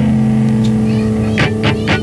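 Opening of a lo-fi garage punk track: a held, distorted electric guitar chord ringing steadily, with a quick run of sharp hits near the end just before the full band comes in.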